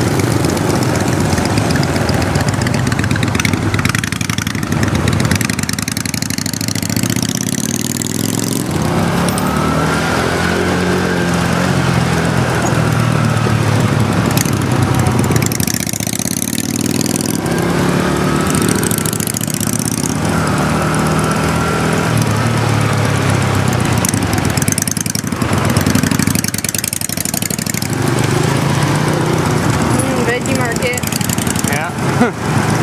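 Motorcycle engine running as it rides through traffic, its note rising and falling several times with the throttle, over steady wind and road noise.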